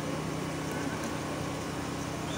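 A steady low background hum with faint constant tones and no other events.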